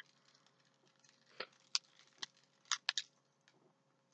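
Keys and keychains on a lanyard being handled: a handful of faint, scattered clinks and clicks.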